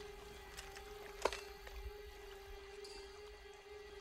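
Quiet, suspenseful film score: one low note held steadily, with a few sharp clicks and a louder click about a second in.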